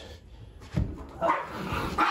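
Small pet dogs, a poodle and a chihuahua, barking as they jump up onto an upholstered armchair. There is a thump a little under a second in.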